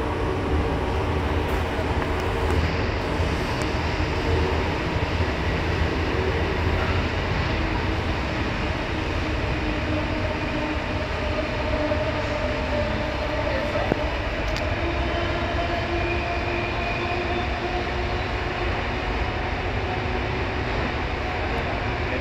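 Passenger train running, heard from inside the carriage: a steady low rumble with humming tones that slowly drift in pitch.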